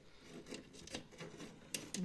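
Faint rubbing and scraping of electrical test leads being handled and moved over a metal workbench, with a couple of small sharp clicks near the end.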